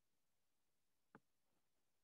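Near silence: faint room tone through a headset microphone, broken by a single faint click about a second in.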